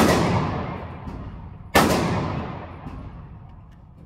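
Two gunshots about a second and three-quarters apart, each followed by a long echoing decay inside an indoor shooting range.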